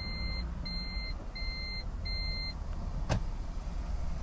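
Four evenly spaced electronic beeps, each about half a second long, over a low steady rumble, followed by a single sharp click about three seconds in.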